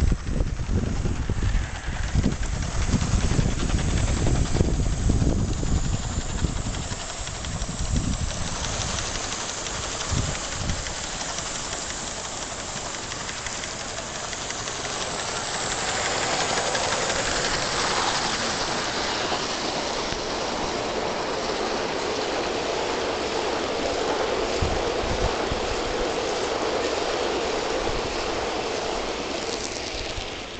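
Aster Gauge One live-steam model of a Bulleid 'Battle of Britain' class locomotive running with a 17-coach train: a steady rushing noise of the engine and wheels on the rails, louder from about halfway through. Wind buffets the microphone in the first several seconds.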